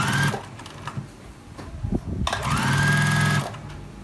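Juki Spur 98 semi-industrial straight-stitch sewing machine stitching through fabric. There is a brief burst at the start, then a run of about a second about halfway through. Each time its motor whine rises as it speeds up, and it stops sharply.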